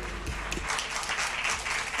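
Scattered audience applause, a light crackle of many hands clapping that picks up about half a second in.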